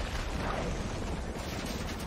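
Film soundtrack of a large explosion and fire: a dense, steady rush of burning and rumbling with a heavy low end.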